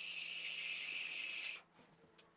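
A steady high hiss lasting about a second and a half, starting and cutting off abruptly.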